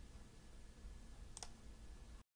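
Near silence: room tone, with a single brief click about one and a half seconds in.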